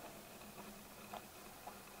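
Quiet outdoor ambience: a faint steady hum with a few soft, sparse clicks, about one every half second to second.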